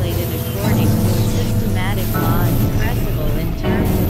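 Experimental synthesizer drone music from hardware synths (Novation Supernova II, Korg microKORG XL): a steady low drone with short, wavering, voice-like gliding tones recurring above it.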